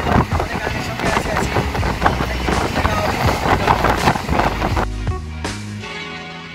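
Running noise of a moving passenger train heard at the coach's open doorway: dense rattling and clatter with wind. Near the end it gives way to background music with steady bass notes.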